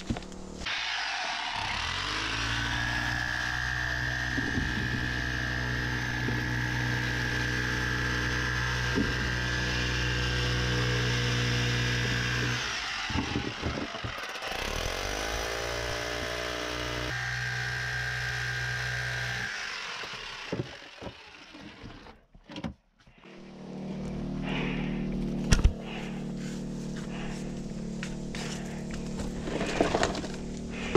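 Small electric SDS jackhammer with a chisel bit, hammering into reef rock. It runs in long bursts, stopping briefly a little before the halfway point, pausing for a few seconds about two-thirds of the way through, then starting again.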